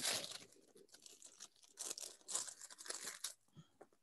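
Faint paper rustling and crinkling in short irregular flurries, at the start and again through the middle: pages being leafed back through.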